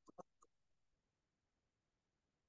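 A few faint keyboard key clicks in the first half second, then near silence.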